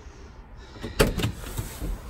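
A sharp knock about a second in, followed by a few lighter knocks and rustles.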